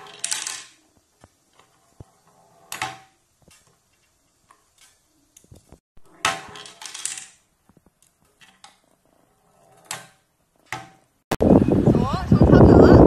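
Small plastic bowling pins clattering as a ball rolls down a wooden tabletop mini bowling lane and knocks them over, in several short bursts a few seconds apart with light taps between. Near the end, wind noise on the microphone takes over.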